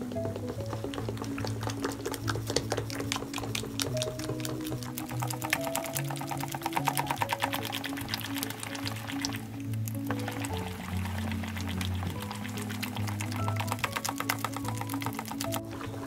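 Background instrumental music over a hand beating thick ground-dal batter in a steel bowl, a quick steady run of wet slaps to whip air into the khaman batter.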